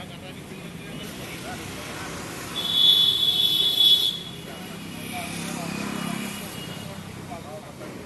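Outdoor street background of vehicle noise and indistinct voices. About two and a half seconds in, a louder burst with a steady high tone lasts about a second and a half, followed by a lower passing hum.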